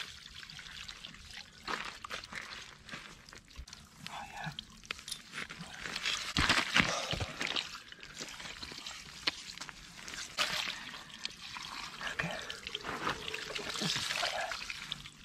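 Water poured from a plastic tub splashing over a flathead catfish in a landing net, in an uneven stream of splashes and trickles.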